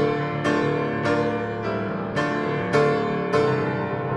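Young Chang grand piano played live: heavy chords struck in a steady beat, a little under two a second, each ringing on until the next. The melody is set in a dark mood that sounds angry.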